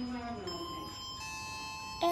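An electronic elevator chime: steady pitched tones start about half a second in, a higher set joins about a second in, and both are held without fading.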